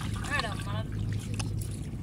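A child's short high-pitched call, with faint splashing of bare feet wading in shallow river water.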